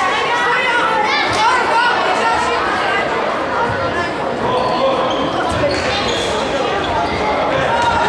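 Spectators chattering in the echoing sports hall, with the thud of a handball bouncing on the court floor now and then.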